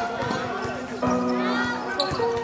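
A basketball being dribbled on a hard court, with players' voices calling out around it; one bounce sounds about a second in.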